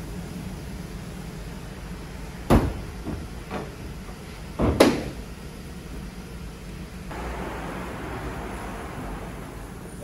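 Two loud knocks with a couple of fainter ones between them, over a low steady hum, from work around a car in a repair shop; a steady hiss starts about seven seconds in.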